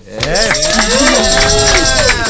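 Several voices whooping and cheering at once, long 'woo' calls rising and falling over each other, starting suddenly and loudly.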